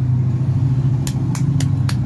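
Four sharp hand claps about a quarter second apart in the second half, over a steady low motor rumble.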